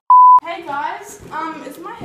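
A short, loud, steady electronic test-tone beep, the tone that goes with TV colour bars. It lasts about a third of a second and cuts off sharply.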